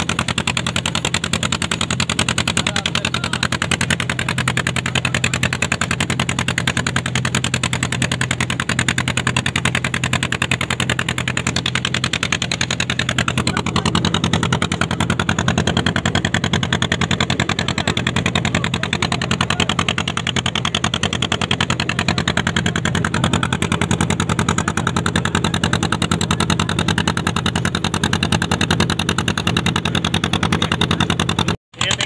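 Boat engine running steadily under way, a fast, even throb that does not change.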